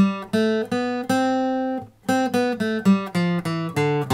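Single guitar notes playing up the C major scale to the high C, which rings for nearly a second, then stepping back down the scale in quick even notes.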